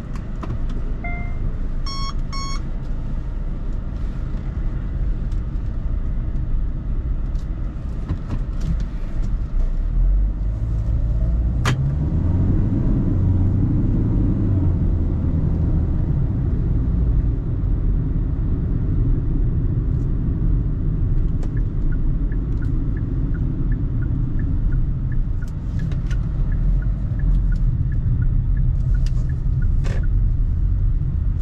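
Cabin sound of a 2018 Hyundai Tucson 2.0 CRDi's four-cylinder turbodiesel pulling away, with the engine note rising as it accelerates about twelve seconds in, then steady engine and road rumble at speed. A short electronic beep comes near the start, a click just before the acceleration, and a faint regular ticking in the last third.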